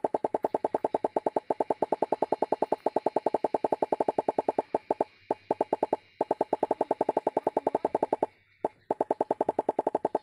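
Rapid, evenly spaced popping sound effect of cartoon popcorn kernels bursting, about eight pops a second. It breaks off briefly about five seconds in and again near eight and a half seconds, then resumes.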